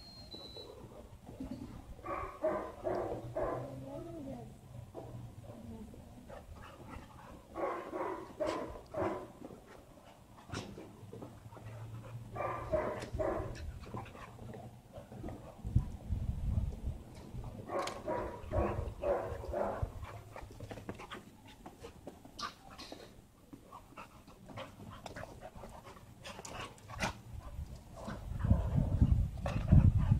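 Two dogs play-wrestling, with about four short bouts of dog vocalizing and scuffling sounds between them. It is rough play that the dogs are enjoying, not a fight.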